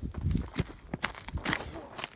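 Irregular footsteps and thuds on dry, stubbly ground.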